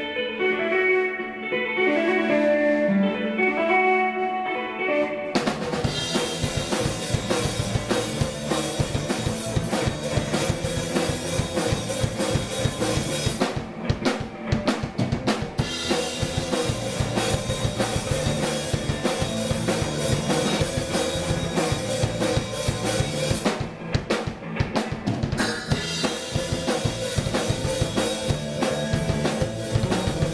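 Live instrumental rock band. An electric guitar plays alone for the first five seconds or so. Then the drum kit and electric bass come in, and the band plays together with a steady beat.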